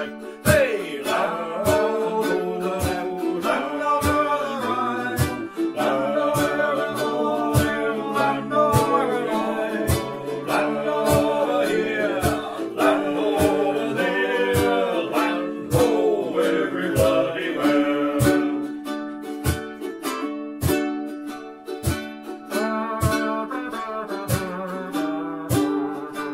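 Ukulele strummed in a steady rhythm, with a gliding melody line over it for about the first two-thirds, then the strumming carries on alone near the end.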